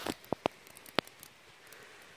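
Handling noise from a handheld camera being positioned: four short clicks and knocks in the first second, then quiet rustling.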